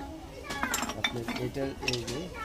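Small fired-clay (terracotta) dishes and lids clinking and knocking against each other as they are handled, a few sharp clinks over a voice.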